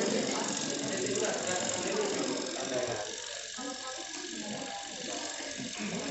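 Continuous, dense ratchet-like rasping clatter from hands working at the base of a large wooden coffin, fading out near the end, with voices talking underneath.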